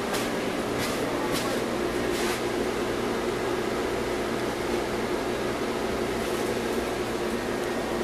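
MAZ-103.485 city bus heard from inside the passenger cabin while driving: a steady engine and drivetrain hum, with a few short hisses in the first couple of seconds.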